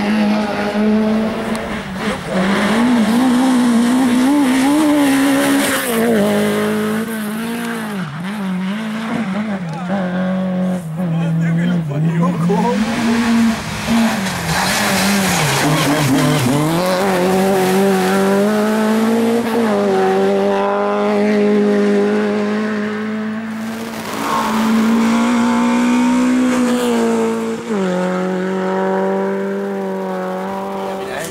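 Peugeot 205 rally car's four-cylinder engine revved hard at full attack, its note climbing and then dropping sharply several times as it shifts gear and lifts for corners across a few passes.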